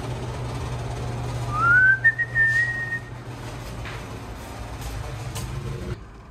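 Paint booth exhaust fan running with a steady hum. About one and a half seconds in, a short whistle rises in pitch and holds for about a second.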